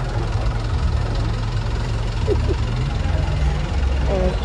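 A truck engine idling steadily with a low hum.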